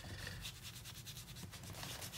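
A brush scrubbing paint across a paper journal page: faint, rapid rubbing strokes.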